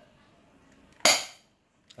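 A single shot from a Q7 BB gun firing a 0.20 g BB, a sharp crack about a second in that dies away within half a second. The shot misses the target, so no hit follows.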